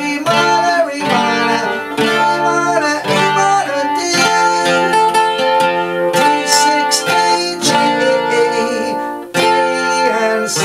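Steel-string acoustic guitar strumming the song's chord progression, with a strum about every second and the chords ringing between strums. The playing breaks off briefly near the end, then the next strum comes in.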